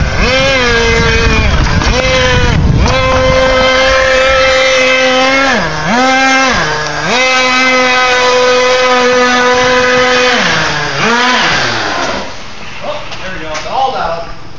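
Small nitro glow-fuel two-stroke engine of an HPI RC monster truck running at high revs as a steady high buzz. The pitch dips a few times as the throttle is let off and opened again, and the engine dies away about twelve seconds in. The drivers wonder whether it ran out of fuel or is running too rich.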